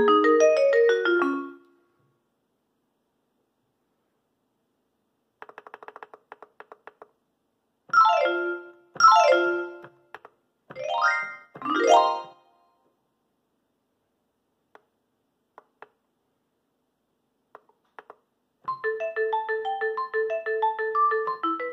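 A Yamaha PSS-A50 mini keyboard plays through its built-in speaker as it is switched between voices and arpeggio settings. An arpeggio dies away in the first second or two. After a pause comes a quick run of short clicking notes, then four fast sweeps of notes in the middle, a few faint ticks, and a new arpeggiated pattern near the end.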